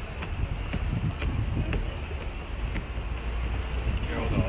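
Wind buffeting the microphone as a steady low rumble, with light footsteps on wooden stairs about twice a second.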